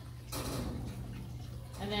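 A brief scraping rattle about half a second in as a refilled water bowl is slid back into its holder on a metal cat cage, over a steady low hum.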